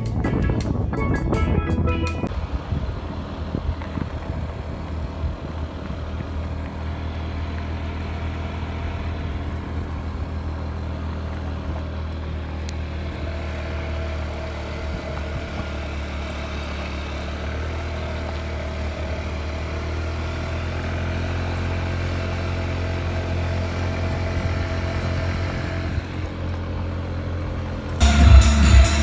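Music for the first couple of seconds, then a small motor scooter's engine running steadily as a low, even hum.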